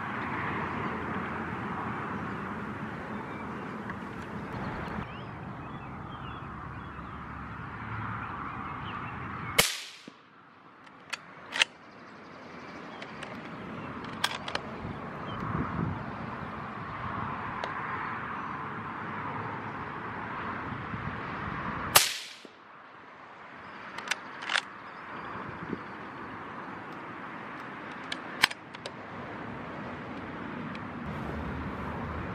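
Two rifle shots from a CZ527 bolt-action rifle in .17 Hornet, about twelve seconds apart, each a sharp crack with a short tail. A few lighter clicks follow each shot a second or two later, over a steady outdoor background.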